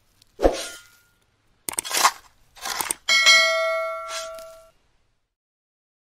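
Logo-intro sound effects: three short swishes, then a single bell-like ding about three seconds in that rings and fades out over about a second and a half.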